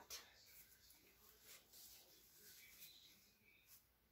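Near silence: room tone with a few faint light ticks.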